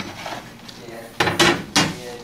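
A steel carpenter's square and a linoleum sheet set down on a work table. The first second is quiet handling, then come three sharp metallic clacks in quick succession in the second half.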